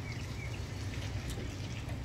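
Faint scraping and small metallic ticks as a new rear brake pad is pressed by hand into the caliper bracket's clips, over a steady low hum.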